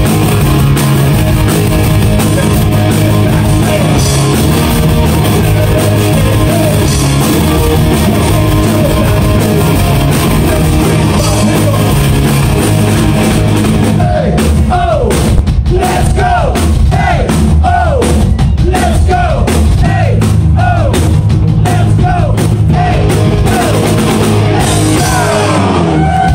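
Live rock band playing loudly in a club: electric guitar, bass and drum kit with vocals. From about halfway through, a line of short notes that each bend down in pitch, about two a second, rides over the band.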